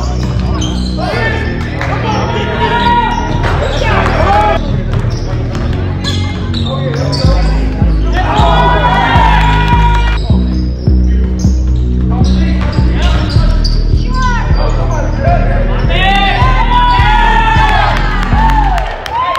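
Basketball bouncing and sneakers squeaking on a hardwood gym floor, with players calling out, over background music with a heavy bass that gets stronger about seven seconds in.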